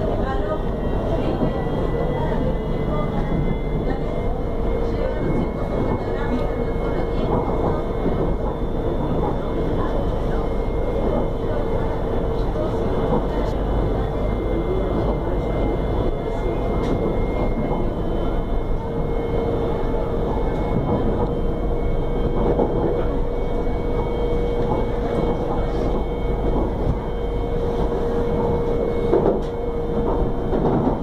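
Interior running noise of a CSR electric multiple unit: a steady rumble of wheels on rail with a constant electric whine.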